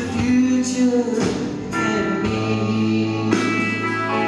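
Live band music: acoustic guitar over electric bass and drums.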